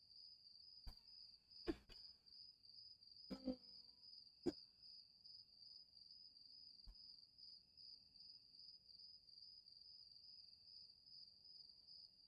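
Near silence: a faint, steady high-pitched trill or whine with a regular pulse runs throughout, and a handful of soft knocks fall in the first seven seconds.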